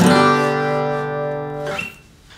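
Acoustic guitar: a G major chord strummed at the start and left to ring, fading slowly, then damped just before the end.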